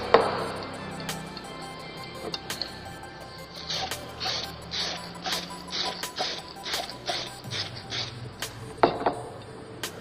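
Aerosol can of clear lacquer sprayed onto a ceramic mug in a run of short bursts, over background music, with a few sharp clicks.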